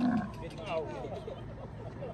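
A camel groaning as it gets up from kneeling with a rider on its back, with people talking in the background.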